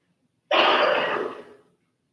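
A person clearing the throat with one loud, rough cough. It starts suddenly about half a second in and dies away within about a second.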